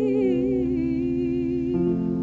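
Choir singing with instrumental accompaniment: a long, wavering vocal note is held over steady sustained chords.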